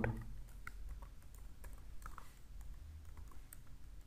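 Computer keyboard being typed on, faint scattered keystrokes at an irregular pace.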